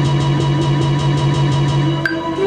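Hip-hop beat playing from Ableton Live, triggered from an Ableton Push 2 pad controller: a sustained sampled chord over a held low note, with quick, even ticks.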